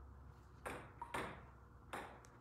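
Dry-erase marker writing on a whiteboard: three short squeaky strokes, about half a second apart.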